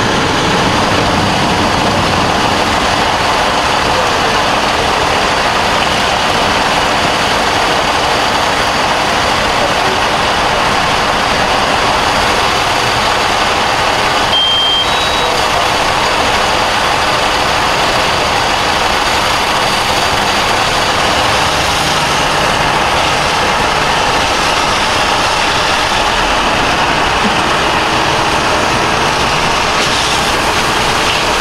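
A burning car and a fire engine's diesel running nearby make a steady, loud noise with no let-up. A short high beep sounds about halfway through.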